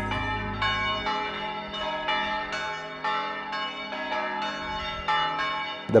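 Church bells ringing in a sequence of strikes, about two a second, each strike's ring overlapping the next.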